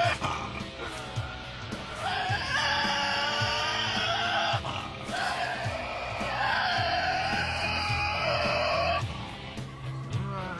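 Two long, wavering screeches from a Tasmanian devil, each about three seconds long, the first starting about two seconds in. Background music with a steady beat plays under them.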